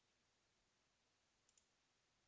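Near silence: room tone, with a faint double click about one and a half seconds in.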